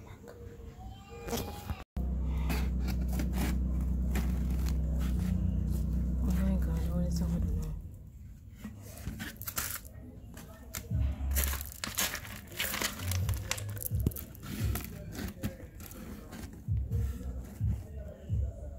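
Camera and microphone handling noise as the camera is set low on the ground: a loud, steady low rumble for several seconds after a cut, then scattered knocks and rustles as someone moves past it.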